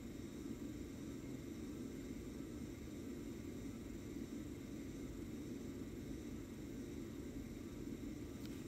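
Steady room tone: an even low hum and hiss with no distinct events.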